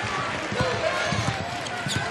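Basketball dribbled on a hardwood court, bouncing repeatedly over arena crowd noise.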